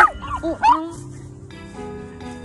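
Small dog giving about three short high yips in the first second, each bending up and down in pitch, the first the loudest; background music runs underneath and carries on alone after them.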